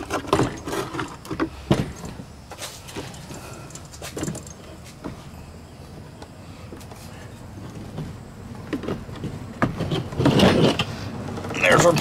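Metal clinks and knocks of a pressure-washer pump and its brass hose fittings being handled, several sharp ones in the first couple of seconds, then quieter handling sounds.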